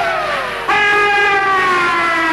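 A woman singing a traditional wedding song, holding two long notes that each slide slowly downward. The second note starts a little under a second in.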